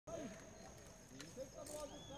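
Faint, distant voices of people talking, with a steady high-pitched whine underneath.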